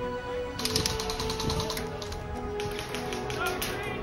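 A fast run of sharp mechanical clicks, starting about half a second in, over background music with long held notes.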